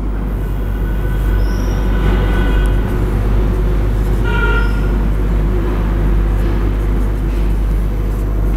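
A steady low rumble, with a marker stroking across a whiteboard and a short squeak from the marker about four seconds in.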